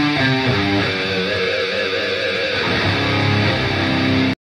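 Progressive-metal recording led by a heavily distorted electric guitar over bass, playing sustained notes. In the middle one held guitar note wavers with wide vibrato, then fuller chords return.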